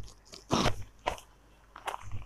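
Crisp rustling and crinkling of a folded silk saree being handled and unfolded by hand: a short rustle about half a second in, then a few brief crackles.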